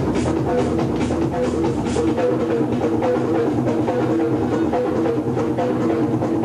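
Loud techno dance music played by the DJ over the club sound system: a steady kick-drum beat of about two strokes a second under repeating melodic notes, with the deep bass thinning out about two seconds in.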